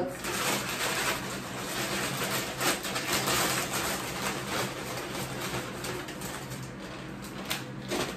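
Plastic shipping mailer and bubble wrap rustling and crinkling as a wrapped package is pulled out, a continuous run of quick, irregular crackles.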